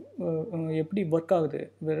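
Speech only: a man talking steadily in a small room.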